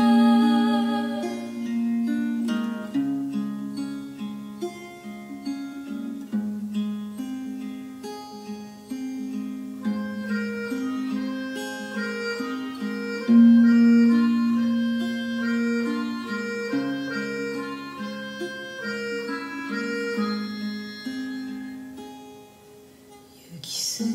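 Instrumental break: a Suzuki Melodion keyboard harmonica plays held melody notes over acoustic guitar. The music dips in loudness shortly before the end.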